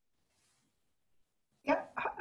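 Near silence, then a single short, sudden sound about a second and a half in, just as a new voice comes in.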